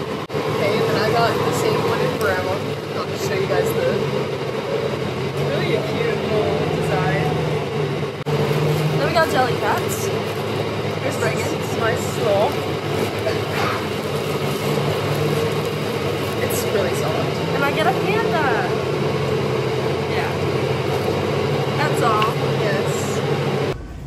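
Steady low drone of a transit bus running, heard from inside the cabin, with voices talking over it.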